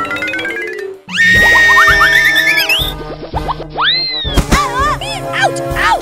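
Cartoon sound effects over children's background music. Falling tones are heard at the start, then after a brief dip a loud entry, followed by several swooping effects whose pitch arcs up and back down.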